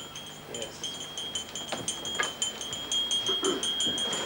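Wind chimes tinkling: many light, quick high strikes over a steady high ringing note.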